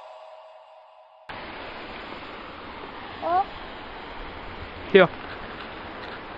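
Music fades out, then about a second in the sound cuts to a steady rushing hiss picked up by a small camera's microphone, with a brief voice sound and a single spoken word over it.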